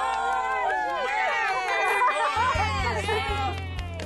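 Several children squealing and calling out excitedly, their high voices overlapping, as a fish is netted out of the water. A steady low hum comes in a little past halfway.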